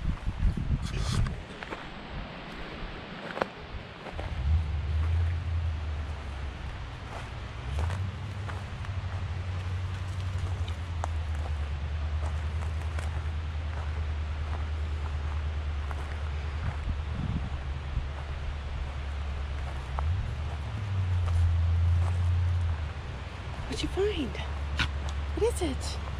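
Footsteps and rustling on a forest floor, with scattered small snaps, over a steady low rumble that sets in about four seconds in.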